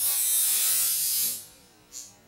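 Compressed air hissing out in one steady blast of about a second and a half, starting abruptly and fading away, followed near the end by a short, weaker puff.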